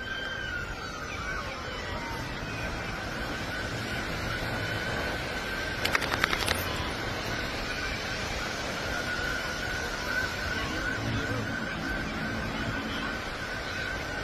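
Distant emergency siren holding a faint steady tone over a steady wash of outdoor beach noise, with a brief cluster of sharp clicks about six seconds in.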